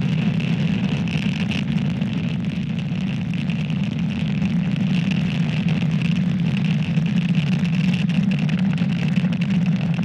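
Falcon 9 rocket's nine Merlin 1D first-stage engines at full thrust during ascent, heard from the ground as a steady low rumble with a hiss above it.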